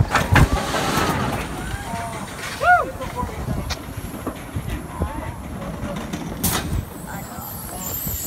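Kraken floorless roller coaster train rumbling along its steel track as it slows near the end of the ride, with the wind on the microphone easing off in the first second. Riders' voices rise over it, one arched call about three seconds in, and a short hiss sounds about six and a half seconds in.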